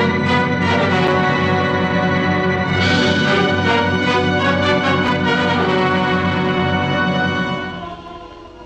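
Orchestral main-title music from a 1930s film soundtrack, loud and sustained, growing fuller and brighter about three seconds in and easing off near the end.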